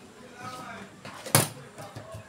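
A single sharp knock about one and a half seconds in: a clear plastic pattern ruler set down on the drafting paper on the table.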